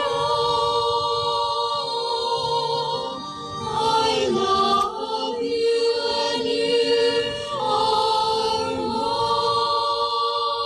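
Church choir singing a slow hymn in long held notes, with two brief breaths between phrases.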